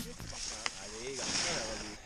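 Faint talking over a steady hiss of wind and skis gliding on groomed snow, with one sharp click about two-thirds of a second in.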